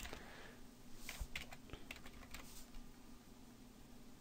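Faint computer keyboard typing: a run of light, separate key clicks over the first two and a half seconds or so.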